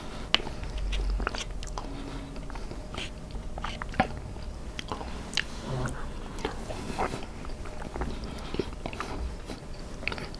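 Close-miked chewing of soft macaroni and cheese, with wet mouth sounds and a scattering of short, sharp clicks. The loudest clicks come near the start and about four seconds in.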